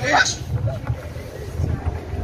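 Wind noise rumbling on an outdoor microphone, after a man's raised voice breaks off about half a second in.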